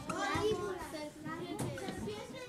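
Several children's voices talking and calling out over one another, offering words for snakes.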